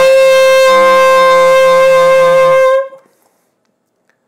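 Alto saxophone holding a single growled note, the written A with the octave key, for just under three seconds before stopping cleanly. The player hums into the horn while blowing, so a low sung pitch sounds under the note and gives it a rough, raspy tone.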